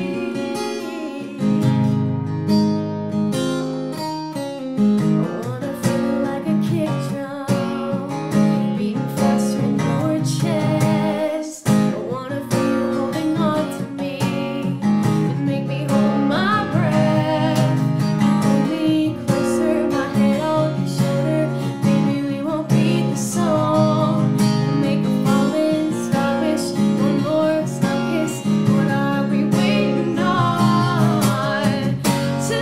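Acoustic guitar strummed and picked alone in an instrumental break between sung verses.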